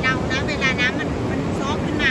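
Surf washing on a sandy beach in a steady roar, with short, high, arching calls of gulls repeated several times over it.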